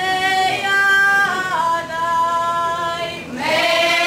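A folk ensemble of women and men singing together in traditional Croatian style, holding long notes that step down in pitch, with a new phrase beginning near the end on an upward slide.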